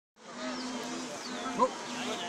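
An insect buzzing close to the microphone, a steady drone that wavers slightly in pitch. About one and a half seconds in there is a short, louder vocal sound.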